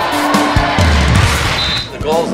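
Gymnasium crowd of spectators cheering and shouting during a volleyball match, with a short high tone near the end.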